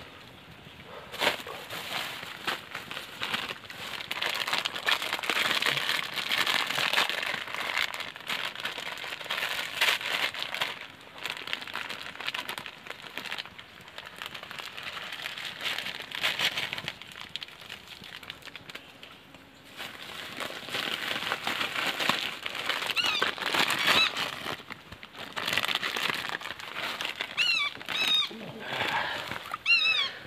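Plastic instant-noodle packets crinkling as they are handled and opened over a boiling pot. The crinkling goes on in stretches with a brief lull partway through. A few short, high, falling chirps come near the end.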